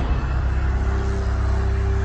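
Loud, steady low rumbling drone with a few held low tones, a dramatic sound effect laid over a slow zoom.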